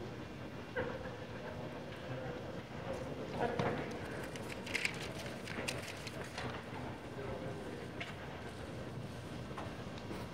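Low background chatter of people standing around in a large indoor hall, no words clear. A cluster of several sharp taps comes about five seconds in.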